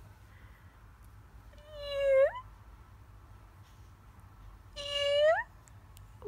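An infant cooing twice, two short drawn-out vowel sounds that each rise in pitch at the end.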